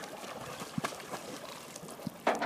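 Water splashing as a mini Australian Shepherd paddles while swimming, with a couple of sharper splashes a little under a second in.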